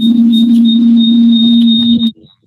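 Loud audio feedback through the meeting's sound system: a steady low tone with a thin high whistle above it, held without a break. It is the sign of an unmuted microphone looping back into the call audio.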